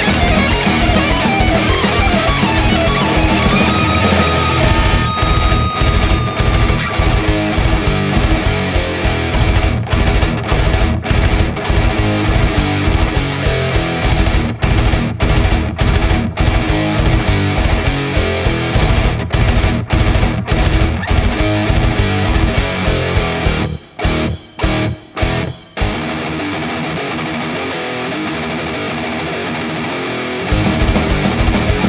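Old-school thrash death metal: distorted electric guitars, bass and fast programmed drums, with a lead guitar note gliding in pitch during the first few seconds. Near the end the band stops and starts on a few short hits, then the drums drop out for a sustained final passage.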